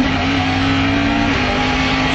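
Rally car engine heard from inside the cabin, held at high revs at a steady pitch while flat out, with a small drop in pitch about two-thirds of the way through.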